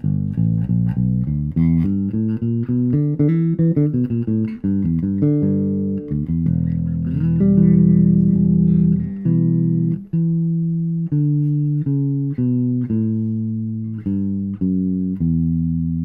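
Fender Mexico 75th Anniversary Jazz Bass played fingerstyle with both single-coil pickups on and the tone knob fully up: a busy line of quick notes, a long held note near the middle, then evenly picked notes.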